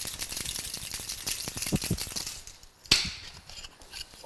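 Two-piece stainless steel Boston shaker shaken hard without ice in the dry shake of a pisco sour. The liquid egg-white mix sloshes and the strainer spring rattles inside, whipping the mix into froth. One sharp knock comes about three seconds in.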